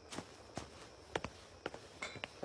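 Faint footsteps of a person walking away across the floor: about six soft, irregular steps.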